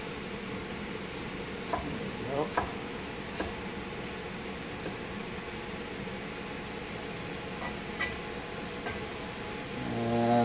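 Food sizzling steadily in a hot wok, with a few scattered sharp knocks of a cleaver coming down on a wooden cutting board as scallions are sliced.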